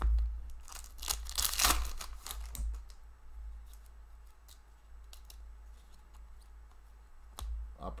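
A hockey card pack's wrapper torn open with a rasping rip about a second in, followed by scattered light clicks and taps as the cards are slid out and leafed through.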